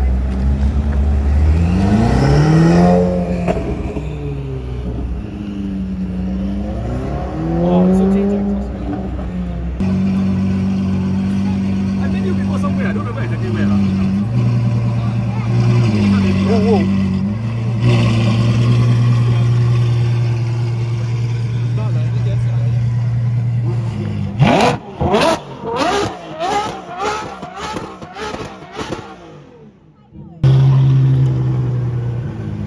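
Ferrari supercar engines: first a car's engine revs up and down twice as it pulls out, then a Ferrari F12's V12 idles steadily with a few light blips of the throttle. Near the end it gives a quick run of sharp revs that fade as the car drives away.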